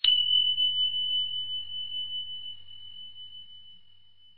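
A single bell-like ding, struck once and ringing as one clear high tone that slowly fades away, over a faint low hum. It is the quiz's signal that the answer time has run out.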